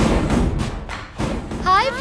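Film soundtrack: a run of dull thuds fading out over the first second, then near the end a high voice sliding up and down in pitch.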